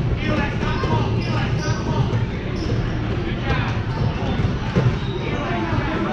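Basketballs bouncing irregularly on a gym floor during a youth basketball game, under voices calling out.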